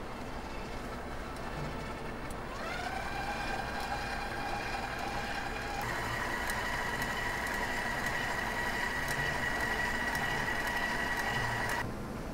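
Stand mixer motor driving a pasta-roller attachment, a steady whine that rises to speed about two and a half seconds in, steps up to a higher pitch about six seconds in, and cuts off suddenly at the end.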